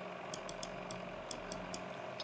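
Faint, irregular clicks, about six in two seconds, from a computer input device while an annotation is being written on screen, over a low steady hum.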